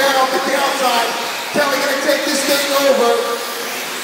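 A race announcer's voice over the PA, echoing in a large hall, with the small RC short course trucks running on the dirt track underneath.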